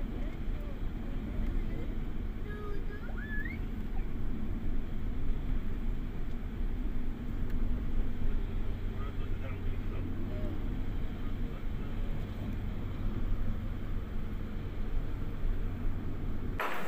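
Steady low rumble of a moving vehicle, engine and road noise heard from inside the cabin while driving.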